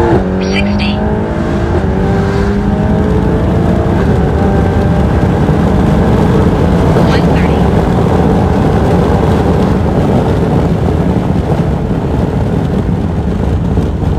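4.0-litre twin-turbo V8 of a Mercedes-AMG GT Black Series under full-throttle acceleration, heard from inside the cabin. The engine note climbs through an upshift, then heavy wind and road noise at well over 100 mph take over as the car comes off the throttle and slows.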